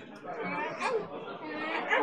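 Indistinct chatter: several people talking at once in the background, no words clear.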